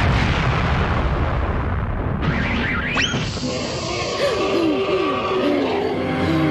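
Cartoon sound effects from a television: a loud noisy rumble for the first two seconds, then a fast rising whistle swoop and a run of short falling whistle-like tones.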